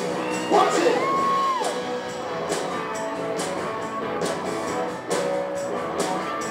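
Live band playing, with electric guitar and Latin hand percussion (congas and timbales) over a drum kit. A voice calls out with a held, gliding note about a second in.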